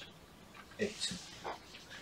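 Quiet pause in a lecture: a brief mumbled word and faint marker strokes on a whiteboard.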